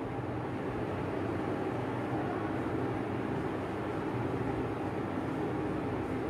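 Steady low hum and hiss of room noise, unchanging throughout, with no distinct events.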